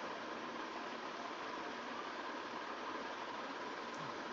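A steady, unchanging hiss with a faint steady hum in it and no other sound.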